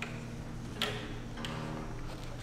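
Single strings of a concert harp plucked one at a time, three notes in two seconds, each starting with a crisp attack and ringing on. The harpist is checking the strings' tuning before playing.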